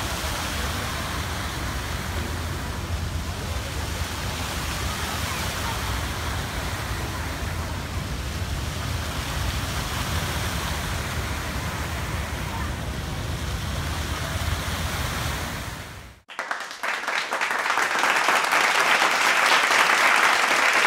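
Steady rushing and splashing of many fountain water jets, with a low rumble underneath. It cuts off sharply about sixteen seconds in, and applause follows.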